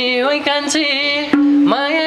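A man singing a Nepali dohori folk-song line, his voice sliding up and down through ornamented phrases with one note held briefly, over harmonium and a few drum strokes.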